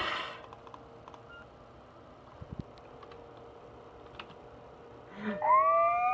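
Quiet room tone with a few soft clicks, then a little over five seconds in a long, steadily rising whistle-like tone starts, played through the computer's speakers.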